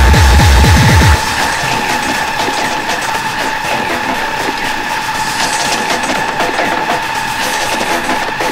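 Speedcore electronic music: rapid, distorted kick drums stop about a second in, leaving a dense wash of distorted noise over a steady held high tone.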